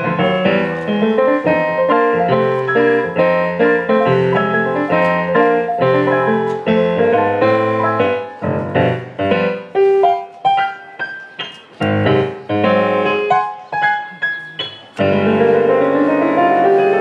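Digital stage piano played four-hands by two players: full, busy chords for the first half, then short detached chords with brief gaps between them, and near the end a sustained passage with a run climbing up the keyboard.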